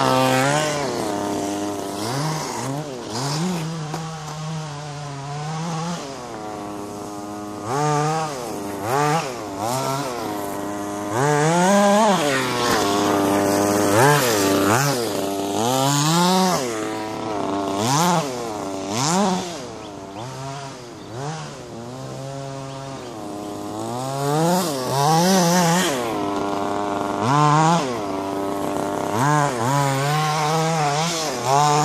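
Several radio-controlled buggies running flat out, their small motors revving up and down again and again with a buzzy, chainsaw-like note that rises and falls in pitch as they race and jump.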